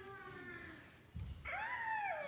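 A high-pitched vocal call about one and a half seconds in, its pitch rising and then sliding down.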